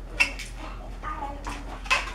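A small piece of black latex balloon being stretched and knotted by hand: a sharp click near the start, then faint rubbery squeaks and small clicks.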